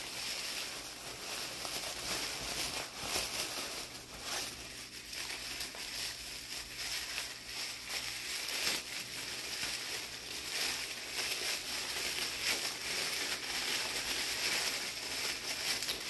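White tissue packing paper crinkling and rustling without a break as a wrapped stone is unwrapped by hand.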